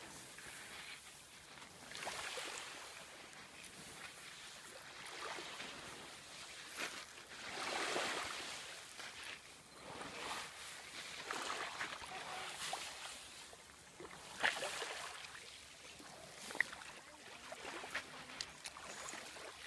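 Small waves washing on a coarse shell-grit beach, swelling and fading every second or two, with the scrape of a green sea turtle's flippers dragging it over the sand toward the water. Two sharp clicks come near the end.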